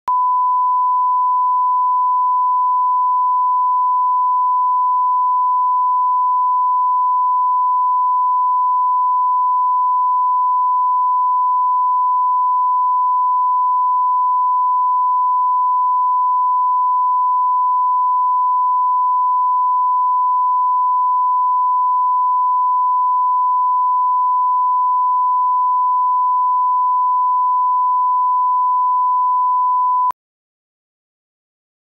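Broadcast bars-and-tone leader: a 1 kHz reference test tone, one steady beep held at a single pitch.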